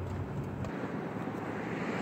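Steady hum of a car heard from inside the cabin. Its low rumble cuts off suddenly less than a second in, leaving a steady outdoor road-noise hiss.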